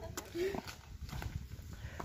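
Faint low rumble with a sharp click just after the start and a few light knocks. A person makes one short vocal sound about half a second in.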